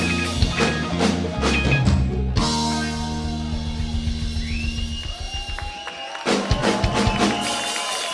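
Live rock band playing with drum kit, electric guitars and bass. About two and a half seconds in the drums drop out, leaving a held chord, and the full band comes back in about six seconds in.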